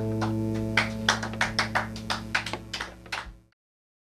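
A guitar's final chord ringing out and slowly dying away, while from about a second in a few people clap, unevenly and fading. The sound cuts off suddenly shortly before the end.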